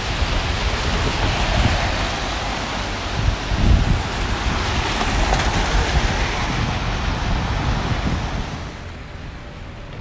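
Wind buffeting the microphone over a steady rushing hiss of traffic on a wet street; it drops noticeably quieter about nine seconds in.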